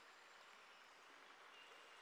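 Near silence: a faint, steady rush of running water, as from a waterfall.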